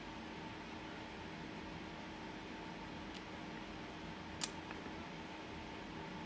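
Quiet room tone: a steady low hiss with a faint hum, broken by a couple of small clicks, the clearer one a little over four seconds in.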